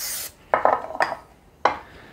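Aerosol cooking spray hissing onto a ceramic baking dish, cutting off a fraction of a second in. Then two clunks about a second apart as the spray can and the dish are set down on the counter.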